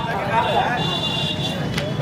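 Men's voices talking, over steady outdoor street background noise, with a single sharp click near the end.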